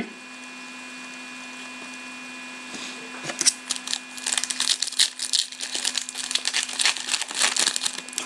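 A shiny foil trading-card pack wrapper being torn open and crinkled by hand, a dense, irregular crackle starting about three seconds in. Before that there is only a faint steady hum.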